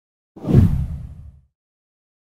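A single whoosh sound effect marking an edited transition, heavy in the low end, swelling fast and fading out within about a second.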